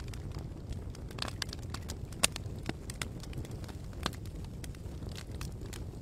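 Fire sound effect: a low steady rumble with irregular sharp crackles and pops scattered through it.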